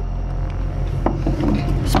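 A glass soda bottle set down and spun on the wooden planks of a bench, knocking about a second in and again near the end, with faint scraping between.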